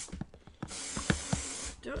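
Can of compressed air spraying: a one-second blast of hiss starting about half a second in, with a few light clicks around it.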